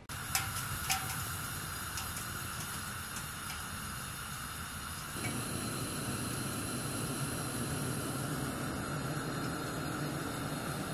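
Propane hissing from a radiant heater after its tank valve is opened, with two sharp clicks in the first second and a few fainter ticks. At about five seconds the hiss fills out into a fuller, slightly louder steady rush as the burner lights.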